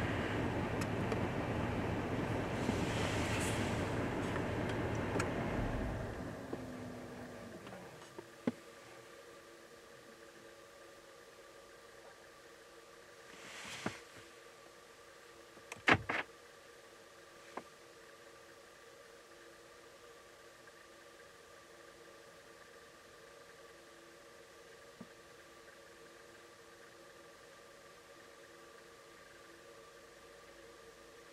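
A vehicle engine running, then shutting off and winding down about six seconds in. After that it is quiet apart from a few sharp clicks.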